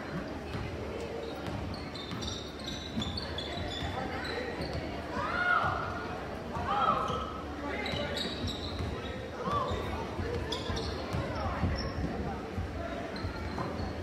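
A basketball dribbled on a gym's hardwood floor, with repeated knocks. Players and spectators call out now and then, sounding through the echo of the gym.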